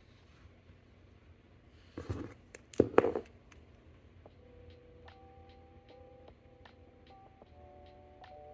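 A short burst of rustling and knocks about two to three seconds in as hands handle copper wire and a pen on a sketchbook page. Soft background music with held notes and a light ticking beat comes in about halfway through.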